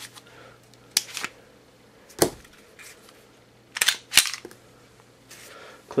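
Glock 19 pistol being cleared by hand: about five sharp metallic clicks and clacks of the magazine and action, in three groups, the loudest a little past two seconds in.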